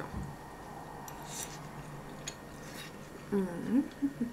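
A person chewing a mouthful of spaghetti, with a few brief soft wet mouth clicks and smacks.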